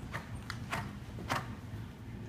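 A horse's hooves on indoor arena footing as it moves past close by: a few sharp, irregular knocks.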